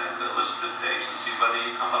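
Only speech: a man talking, telling a story to an audience.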